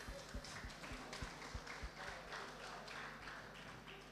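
Light, scattered hand clapping from a few people, irregular and thinning out until it fades away near the end.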